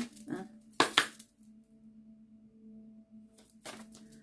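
A single sharp knock just under a second in, followed by a steady ringing tone made of several held pitches, with a couple of faint taps later.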